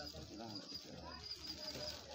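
Faint voices of people talking in the background, under a steady high-pitched tone.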